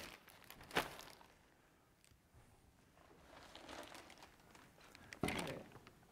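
Quiet handling sounds: a sharp click about a second in, then near the end a brief crinkle of a model rocket kit's plastic bag being picked up.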